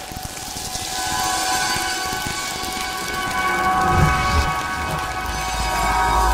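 Sound-design bed of an animated station promo: a rain-like hiss under several held synth tones, swelling. A deep low rumble comes in about four seconds in.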